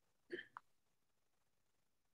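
A person's brief, soft throat or mouth sound about a third of a second in, followed at once by a short click.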